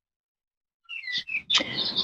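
Birds chirping: short, high chirps and quick gliding calls start about a second in, followed by a denser cluster of noisier calls.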